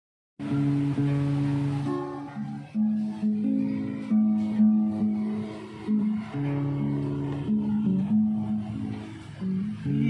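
Acoustic guitar played solo as a song's introduction, starting about half a second in, with chords changing every second or so.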